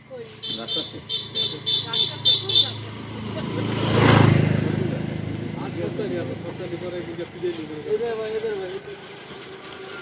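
A motor vehicle passing close by: its sound builds, peaks about four seconds in, and fades away. Before it, for about two seconds, a rapid high metallic ringing.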